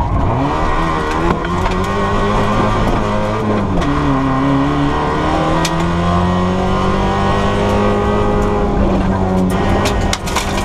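Fiat Palio rally car's engine, heard from inside the cabin, pulling hard under acceleration. The revs climb, drop back around four seconds in, then hold steady and high. A few sharp clicks sound over it.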